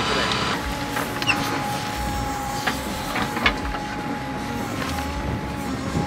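John Deere 310 backhoe running as it digs, a steady whine over a low hum with a few short clicks.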